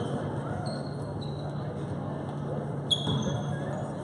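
A basketball dribbled on a gym floor during play, with a sharp bounce or hit about three seconds in, players' sneakers squeaking on the floor, and the echoing chatter of spectators in a large gym.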